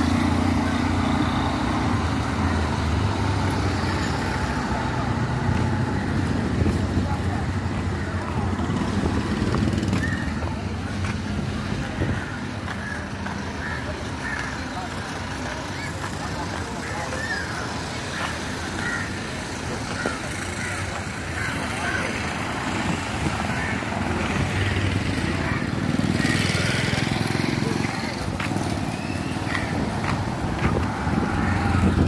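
Street traffic: small vehicle engines such as tuk-tuks and motorcycles running close by, loudest near the start, with people's voices in the background.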